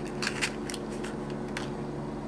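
Small corrugated-cardboard gift box being handled: a few light scrapes and taps as it is closed and set down, over a steady low hum.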